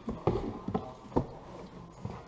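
Cardboard box flaps being pulled open and handled: about four short, sharp knocks and scuffs of cardboard.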